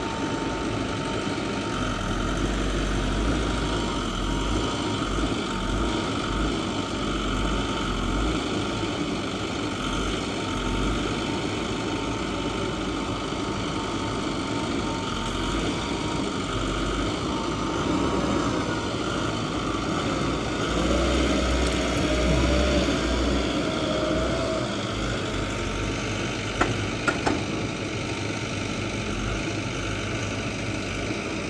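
Vimek 870.2 forwarder's diesel engine running steadily while its hydraulic crane works, with a thin whine that wavers in pitch about two-thirds of the way through. A couple of sharp knocks come near the end.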